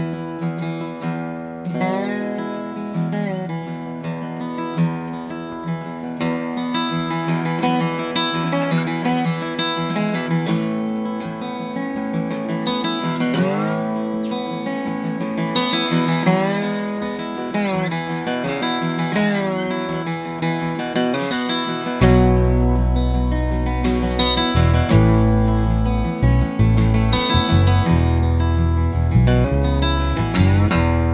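Acoustic guitar played flat on the lap with a glass slide, its notes gliding between pitches in a slow blues introduction. An electric bass guitar comes in about three quarters of the way through with deep low notes.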